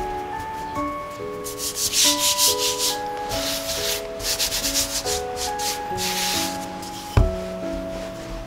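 Flour-dusted hands rubbing and sweeping over soft dough on a floured cutting board: a run of dry swishing strokes, starting about a second and a half in and lasting a few seconds, over gentle background music. A single sharp knock comes near the end.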